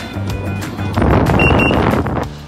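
Veteran Patton electric unicycle's warning beeper sounding two short, high beeps in quick succession, about a second and a half in, over wind and road noise while riding. This is the speed-warning beep, which the rider says comes on earlier and loudly at low battery.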